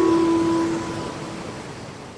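Background music ending: its last held note dies away about halfway through, leaving a soft, fading hiss that sinks steadily toward silence.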